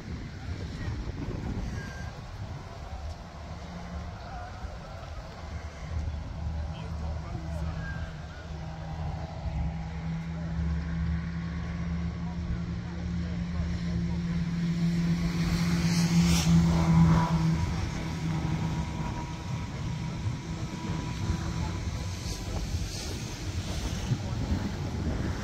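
An engine hum that builds up, is loudest about two thirds of the way through and then fades away, over wind on the microphone.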